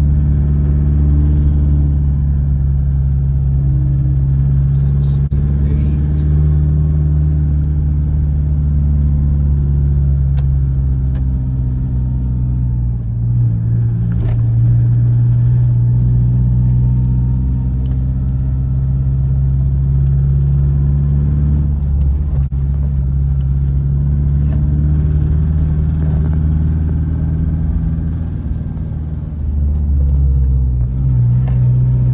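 Car engine and road noise heard from inside the cabin while driving: a steady low hum whose engine note shifts with throttle, changing a little over halfway through and again later.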